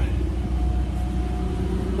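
Onan generator built into a GMC motorhome running steadily under load from freezers and a refrigerator: a constant low hum with a faint steady whine above it.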